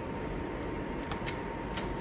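Steady low hum of a quiet garage with a faint thin high whine, and a few light clicks past the middle.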